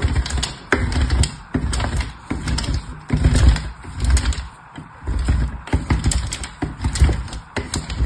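Soap being grated on a metal box grater: repeated scraping strokes, roughly one a second, with sharp little clicks as the pieces come off.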